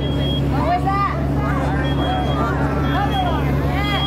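Residential smoke alarm sounding inside a burning mock living room, set off by the smoke of a wastebasket fire. It gives short, high-pitched beeps about a second apart over a steady low engine hum.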